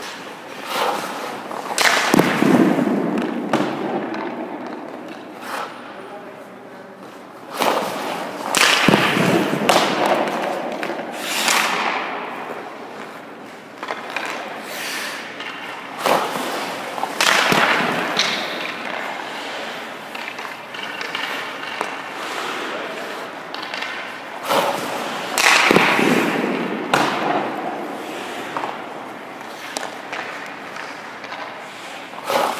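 Hockey goalie skates scraping and carving the ice in repeated bursts during crease movement, several of them starting with a thud as the goalie's leg pads drop onto the ice.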